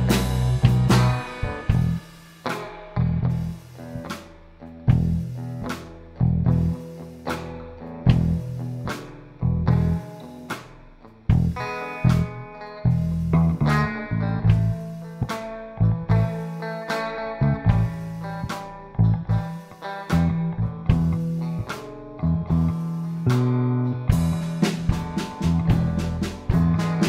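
Slow blues backing track in E at 75 beats per minute: Fender Stratocaster rhythm guitar, fretless electric bass and programmed drums keeping a steady slow beat.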